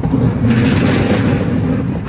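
Roller coaster car rolling along a steel track: a loud low rumble with a rushing hiss of wind on the microphone, growing louder right at the start.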